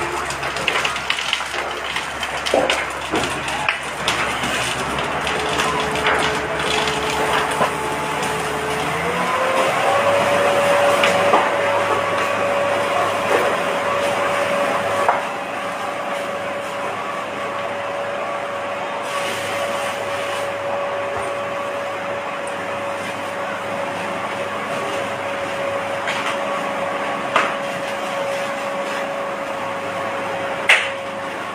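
Fire truck engine running to pump water to the hoses: a steady hum that steps up in pitch about nine seconds in as the revs are raised, then holds steady. Underneath is a constant noisy background with a few sharp knocks.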